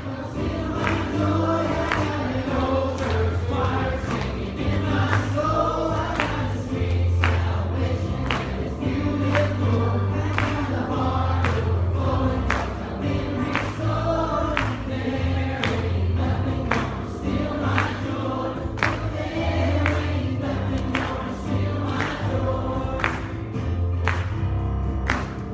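A youth choir singing an upbeat Christian song together, backed by electric guitar, bass and a steady beat.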